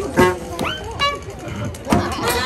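One-man band playing an upbeat instrumental passage with regular drum strokes, with onlookers' voices over the music.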